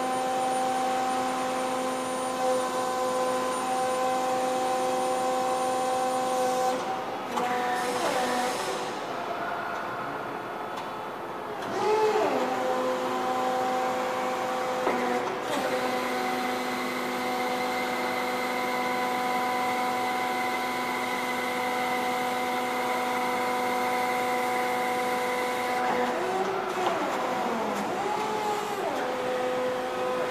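Autolift electric forklift running: a steady, pitched motor whine, with gliding whines that rise and fall several times as it manoeuvres. The steady whine cuts out for a few seconds about a quarter of the way in, then returns.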